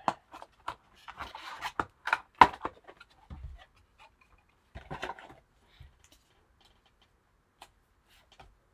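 Cardboard trading-card box being opened and handled by gloved hands: a cluster of scrapes, rustles and taps, with the sharpest tap about two and a half seconds in. A shorter bout of rustling follows around five seconds, then only a few faint ticks.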